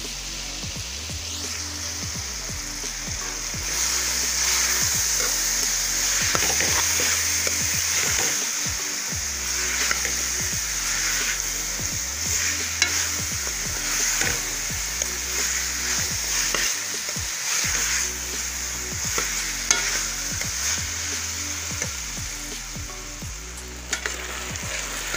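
Sliced raw potatoes sizzling as they fry in hot oil and spice paste in a metal pan, stirred with a steel spoon that scrapes against the pan. The sizzle gets louder about four seconds in, and the spoon knocks sharply twice.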